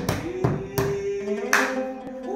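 A few sharp hand strikes on a round, drum-like object, with a man's voice holding one long note between them, as actors perform on stage.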